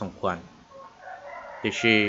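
A faint, drawn-out animal call lasting about a second, in a gap between a man's spoken words, which start again near the end.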